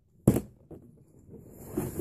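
Handling noise from a clear plastic tackle tray: one sharp plastic clack about a quarter second in, then light rustling and small knocks.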